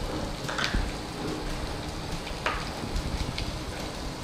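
Chopped vegetables frying in a steel kadai over a gas flame: a steady sizzle, with a few short clicks as a spoon touches the pan.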